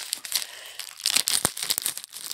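Plastic postal mailer bag crinkling and rustling as it is handled and opened. The crackling grows louder in the second half, with one sharp snap about halfway through.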